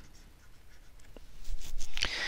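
A few light clicks and scrapes of a stylus on a pen tablet, one about a second in and a quick cluster near the end, over faint hiss.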